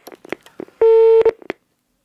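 Telephone line: a few clicks, then a single steady busy-tone beep of about half a second, then more clicks, as the phone call is cut off.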